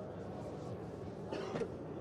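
Steady low background hum of a busy exhibition hall while a DeLorean gull-wing door is lowered shut, with no clear thud or latch, only a faint brief sound about one and a half seconds in.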